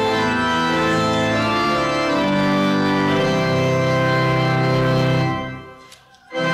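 Organ playing a slow passage of sustained chords that change every second or two, the last chord released shortly before the end.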